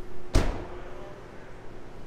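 The rear liftgate of a 2019 Toyota RAV4 slamming shut once, a single sharp thud with a short low rumble after it.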